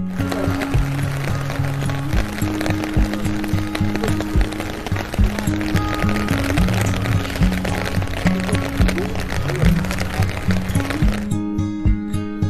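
Steady hiss of rain falling, starting abruptly and cutting off about a second before the end, mixed with background music.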